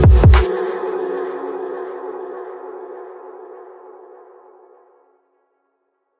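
End of a hypertechno track: a fast, heavy kick-drum beat cuts off about half a second in, leaving a sustained buzzy synth chord that fades out over about four seconds into silence.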